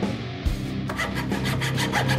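Thin-bladed hand frame saw cutting through a wooden stick clamped in a vise: quick back-and-forth strokes, rasping, picking up to about six or seven strokes a second from about a second in.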